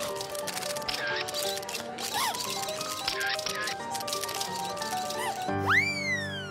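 Cartoon score with steady held notes under rapid flurries of camera shutter clicks, with a few short squeaky pitch-bending blips. Near the end comes a loud sound-effect glide that swoops up sharply and then slides slowly back down.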